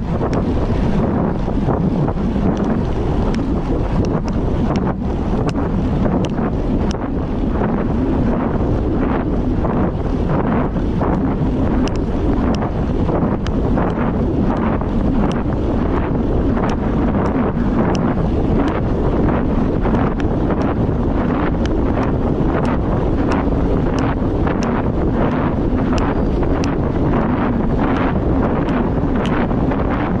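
Wind rushing over the microphone of a moving bike at road speed: a loud, steady roar of air and road noise, with faint ticks scattered through it.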